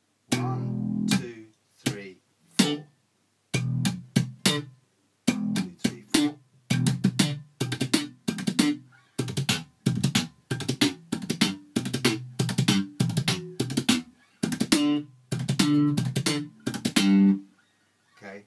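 Electric bass guitar played slap-style: a repeated four-stroke roll of slapped open E, a muted left-hand hit, a tap and a pluck. The strokes are sparse for the first few seconds, then come quickly and densely, the pattern played fast.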